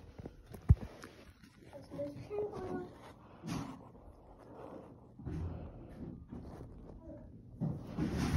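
A single sharp thump a little under a second in, from the phone being handled, followed by rustling and faint, indistinct voices.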